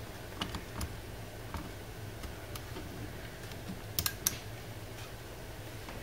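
Light plastic clicks of a wall thermostat's buttons being pressed, several spread over the first few seconds and a sharper pair about four seconds in, over a steady low hum.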